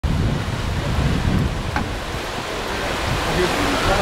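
Whitewater rapids rushing steadily through a canoe slalom course, pouring over a weir drop in a continuous roar of churning water.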